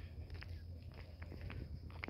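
Faint footsteps of someone walking on bare dirt, about two steps a second, over a steady low hum.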